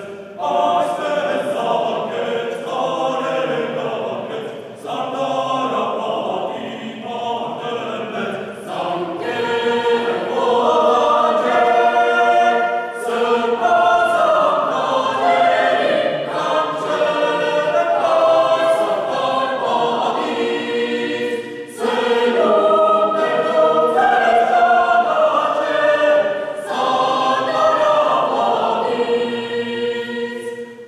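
Mixed choir of women and men singing a cappella, in long phrases with brief breaks between them. The singing grows louder about a third of the way through.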